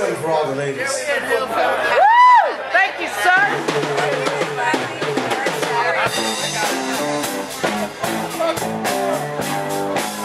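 Live bar band on electric guitars, bass and drum kit: scattered guitar notes over crowd chatter, with one high note sliding up and back down about two seconds in. From about six seconds the band settles into a steady groove with drums and bass.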